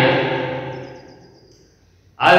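The tail of a man's spoken word fading out with echo in a bare room. It dies away to near quiet about a second and a half in.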